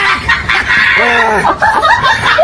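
A rapid series of short, pitched calls, each rising and then falling in pitch, following one another without a break.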